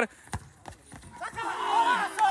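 Players shouting on an outdoor concrete football court as a goal is scored, the voices rising from about a second in. Before the shouting, a few faint sharp knocks from the play.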